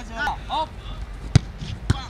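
Two sharp thuds about half a second apart: a football struck hard by a kick, then caught in a goalkeeper's gloves. Short shouted calls from players come just before.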